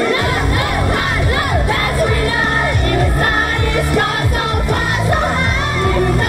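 Amplified idol-pop song performed live. The girls sing into handheld microphones and a crowd of fans shouts along. A heavy bass beat comes in right at the start.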